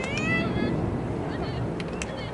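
High-pitched voices shouting and cheering after a lacrosse goal, strongest in the first half second and then thinning to a few scattered calls, over a steady low rumble.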